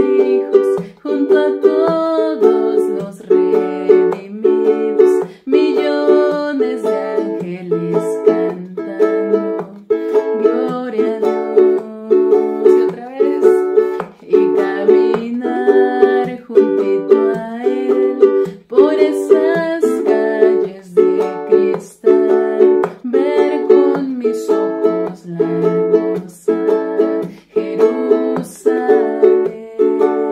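Acoustic ukulele being strummed through a chord progression in a steady, even strumming pattern, the chords changing every few seconds.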